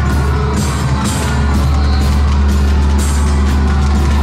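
Live psychedelic noise-rock: a drum kit with cymbal hits playing over a loud, steady low drone and dense distorted noise.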